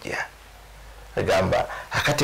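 A man speaking in short phrases, pausing for about a second soon after the start.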